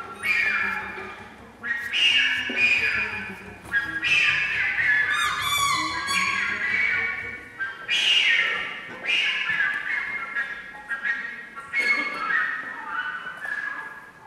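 A contemporary chamber ensemble of strings, harp and piano improvising freely: high, squawking pitched sounds with slides in pitch, in phrases that start afresh every few seconds.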